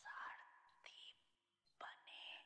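Near silence in a pause between spoken phrases, with faint breath noise at the microphone a few times.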